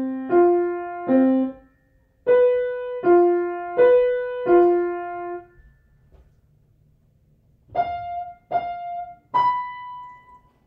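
Grand piano played slowly in a simple piece built on fourths: detached notes in short groups with pauses between them, two notes at the start, a group of four, then after a pause three higher notes near the end.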